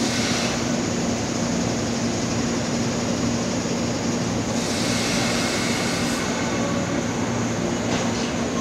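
A 489-series electric train standing at the platform, its onboard equipment running with a steady hum. A hiss comes in for under two seconds about halfway through.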